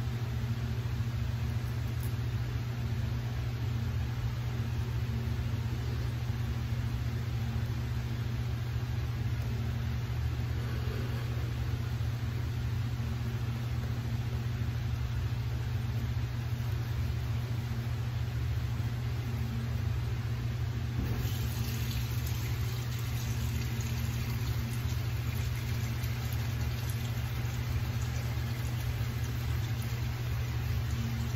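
A steady low mechanical hum runs throughout. About two-thirds of the way through, a brighter hiss joins it.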